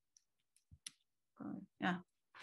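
A few faint, sharp clicks of a computer mouse, clicked repeatedly to get a presentation slide that was not responding to advance; a woman's voice comes in near the end.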